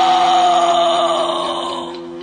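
End of a punk rock song on cassette: the band has stopped and a single held high note, falling slowly in pitch, rings over a steady low hum, then cuts off near the end and fades away.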